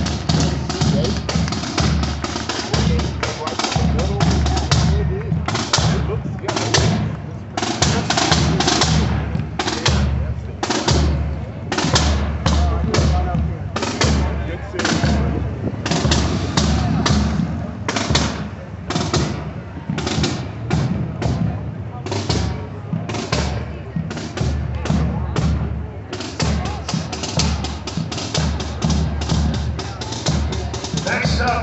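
High school marching band drumline playing a cadence, with bass drum and snare strokes at about two beats a second.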